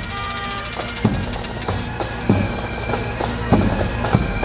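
Pipe band playing a march: bagpipe drones held under heavy bass drum strokes about every second and a quarter, with rapid snare drum strikes.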